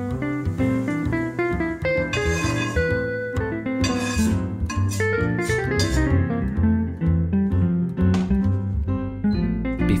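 Instrumental background music.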